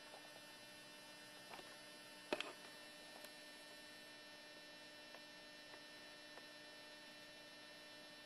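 Near silence with a faint steady mains hum and a few light clicks, the loudest a quick double click about two and a half seconds in.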